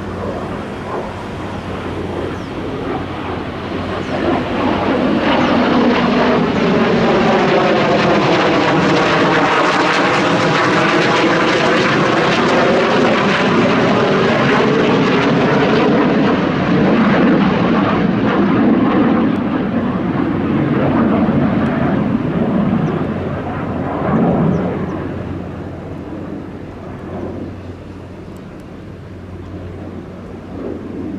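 Low pass of a Dassault Mirage 2000 fighter's single M53 turbofan jet engine. The jet noise swells over the first few seconds and is loudest for about ten seconds, with a sweeping, phasing whoosh as the jet passes overhead. It then dies away over the last several seconds.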